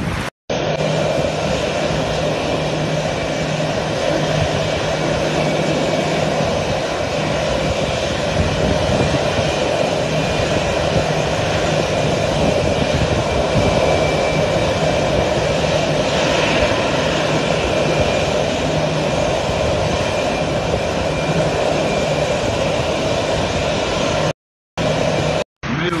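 Aircraft engine running steadily on the airfield: a constant drone with a high whine held over it. The sound cuts out briefly just after the start and twice near the end.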